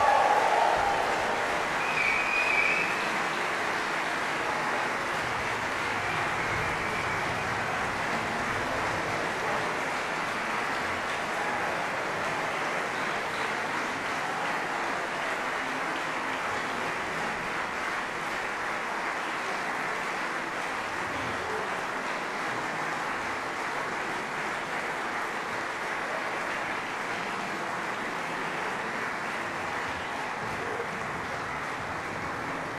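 Concert audience applauding steadily after the final chord, the clapping even and sustained throughout, with a short high call or whistle about two seconds in.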